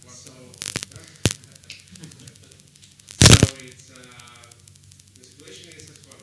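Faint speech from someone away from the microphone over a steady mains hum, with a couple of sharp clicks about a second in and one loud, short thump a little after three seconds.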